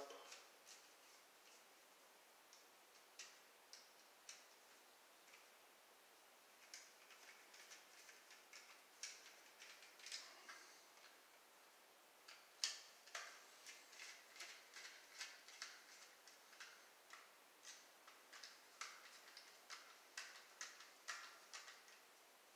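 Faint, irregular small clicks and ticks of a screwdriver working the terminal screws of a GFCI receptacle, opening its pressure-lock wire clamps. The clicks are sparse at first and come more often in the second half.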